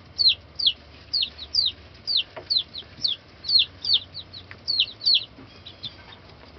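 Baby chicks peeping: a steady run of short, high, falling peeps, two or three a second, growing fainter near the end.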